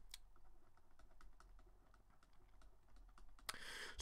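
Faint, irregular light taps and clicks of a stylus on a tablet screen while words are hand-written, over near-silent room tone.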